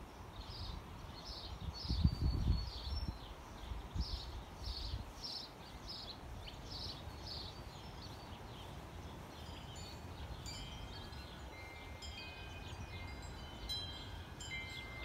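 Wind chimes ringing in several clear tones from about ten seconds in. Before that, a bird calls over and over in short high notes, and gusts of wind rumble on the microphone about two seconds in.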